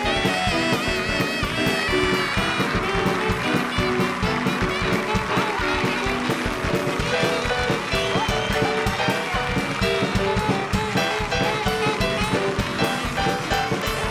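Small live band, keyboard, drum kit and saxophone, playing an upbeat tune over a fast, steady drum beat.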